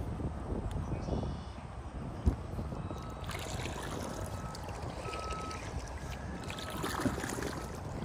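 Wind rumbling on the microphone and water lapping against the kayak's hull as it drifts, with a single knock a little over two seconds in.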